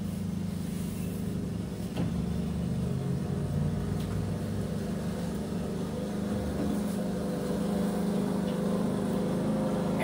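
Petrol lawn mower engine running steadily just outside the window. A couple of light knocks come about two and four seconds in as canvases are swapped on the easel.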